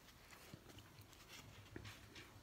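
Near silence, with a few faint soft clicks and rustles of a small cardboard board book being handled and opened.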